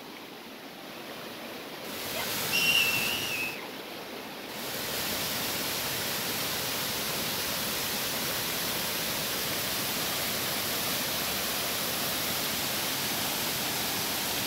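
Waterfall and stream rushing as a steady even hiss, which grows louder about four and a half seconds in and then holds. About two seconds in, a brief high whistle sounds for around a second and a half, sliding slightly down.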